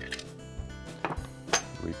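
Background music with steady tones, over a few light knocks and clicks of plastic ice bin auger drum parts being handled and set down on a workbench.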